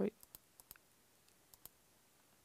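A few faint clicks from a computer while presentation slides are flicked forward and back: four quick ones in the first second, then two more about a second and a half in.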